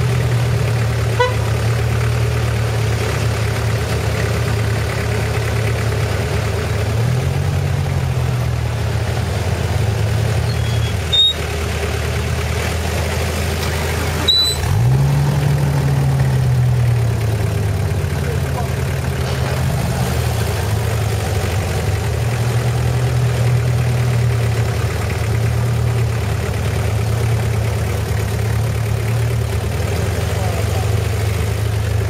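Off-road 4x4 engine idling close by, its revs rising and falling back twice, about a quarter and halfway through. A couple of sharp clicks come just before the second rise.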